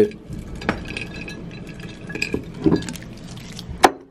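Hand rummaging in a glass candy jar, wrapped hard candies rattling and clinking against the glass, with one sharp clink near the end.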